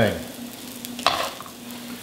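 Arborio rice and asparagus tips toasting in oil in a nonstick pan, a faint steady sizzle while the rice is stirred, with one short scrape about a second in.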